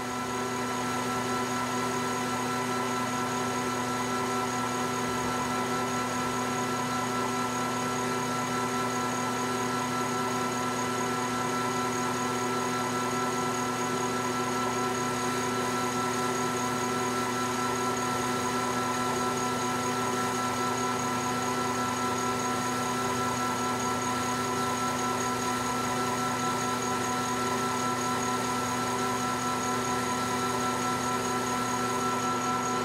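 Metal lathe running steadily, its drive giving an even whine of several steady tones, while a diamond-shaped insert takes a slow-feed turning cut on a metal part.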